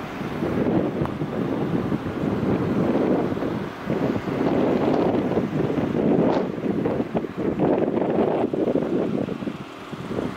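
Wind buffeting the microphone, a noisy rush that rises and falls in gusts, with two short lulls.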